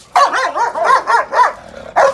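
Dog yelping and barking during a play-fight: a fast run of high, rising-and-falling yelps for about a second and a half, then one more yelp near the end.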